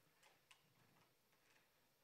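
Near silence: room tone with a few very faint, short clicks.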